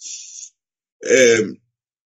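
A man's voice: a short hiss at the start, then about a second in he briefly clears his throat.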